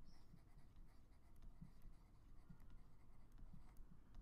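Faint taps and scratches of a stylus on a tablet as a word is handwritten, scattered light ticks over near silence.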